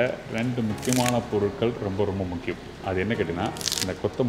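A man talking continuously; only speech is heard.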